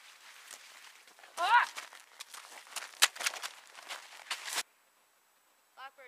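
Rustling and crackling of someone pushing through spruce branches and moving over snow, with many small snaps and one sharp click. A short rising vocal cry comes about a second and a half in. The sound cuts off abruptly about a second before the end.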